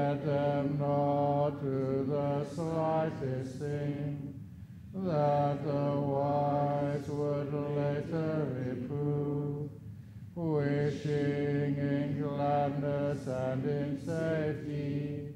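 A Buddhist monk chanting Pali verses in a low male voice, on nearly level held notes, in three long phrases broken by short pauses for breath.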